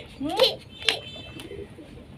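Short muffled, closed-mouth vocal sounds from a person holding a mouthful of water, one rising in pitch about half a second in and a shorter one near one second, with a few sharp clicks.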